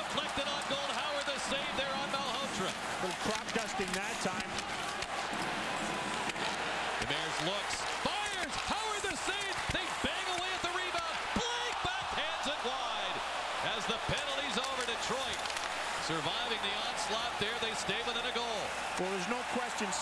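Ice hockey arena sound during live play: a steady crowd din with shouts, broken by scattered sharp clacks of sticks and puck on the ice and boards.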